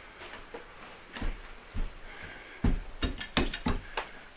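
Feet thumping on an old wooden floor, a few spaced thuds and then a quick run of heavier ones in the second half, as the floor is tested underfoot.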